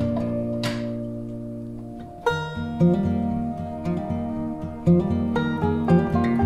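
Background music of plucked guitar notes over sustained tones, changing chord about two seconds in.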